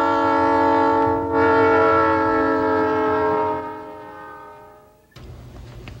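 A held chord of several steady tones sounding together, loud at first. It has a brief dip about a second in, then fades out over the following few seconds.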